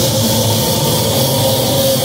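Thrash metal band playing live, loud distorted electric guitars holding a steady sustained note.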